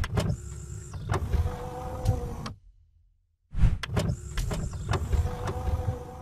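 A mechanical sliding sound effect, played twice with about a second of silence between. Each run is a steady whir with clicks and lasts about two and a half seconds.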